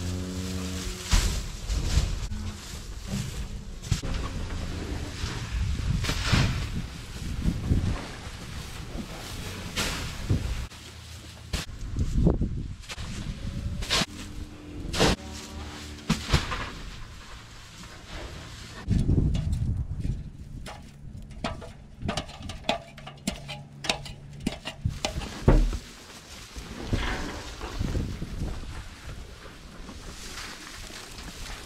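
Hay bales thudding down and hay rustling as bales are thrown from a stack into a cattle manger, with the loudest thump late on. Cows moo several times, near the start, about halfway through and for a stretch toward the end.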